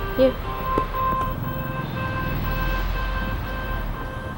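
Television soundtrack playing soft background music with long held notes over a low hum, after a single spoken word, "here", at the very start.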